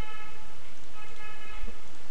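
Steady background hiss, with two brief, faint pitched tones about a second apart.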